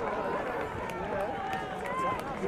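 Indistinct shouts and calls from field hockey players on the pitch during open play, with a few faint ticks.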